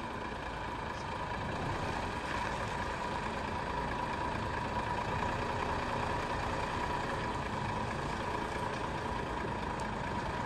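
Diesel engine of a tractor-trailer truck running steadily at low revs as the rig reverses slowly, growing slightly louder over the first couple of seconds.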